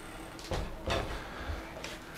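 A few soft clicks and knocks from a small wall-mounted switch box being worked by hand, over a low steady rumble.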